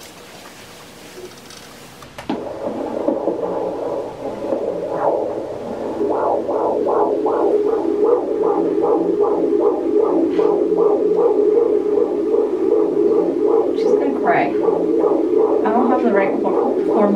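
Handheld fetal Doppler picking up a 22-week baby's heartbeat. After about two seconds of hiss, the probe finds it: a fast whooshing pulse of about two and a half beats a second, a normal fetal heart rate. A voice breaks in near the end.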